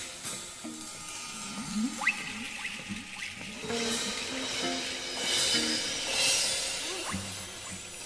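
Background music: a melody of short held notes with a few quick pitch slides.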